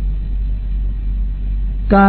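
A steady low hum with a faint hiss fills a pause in a man's speech, and the speech starts again just at the end.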